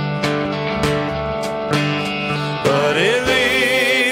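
Live worship band playing a slow song: electric guitars hold a steady chord, and a singer's voice comes in about three seconds in with a rising, wavering line.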